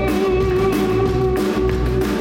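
Live rock band playing an instrumental stretch on electric guitars, electric bass and drums, with a guitar note held steady throughout.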